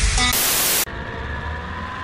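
A loud burst of static hiss about half a second long, cutting off suddenly. It is followed by a lower, steady hiss with faint music underneath.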